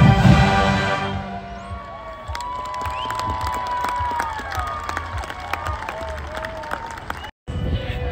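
A marching band's held chord cuts off about a second in, followed by crowd cheering and applause with long whoops.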